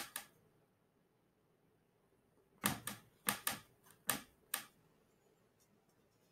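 Oil paintbrush working paint on a glass palette: a quick run of about six short taps and clicks in the middle, with near silence either side.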